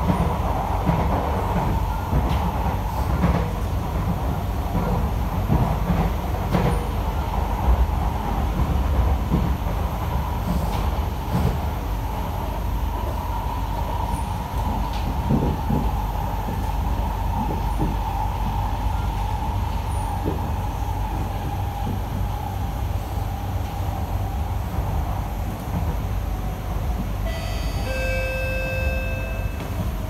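Interior of an SMRT C151A metro car (Kawasaki & CSR Sifang) running along the track: a steady low rumble of wheels on rail with scattered light knocks, and a motor whine that slowly falls in pitch. Near the end a brief steady chime-like tone sounds.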